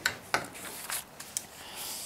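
A paper sale flyer being handled by hand: light rubbing and rustling of the paper with a few short ticks.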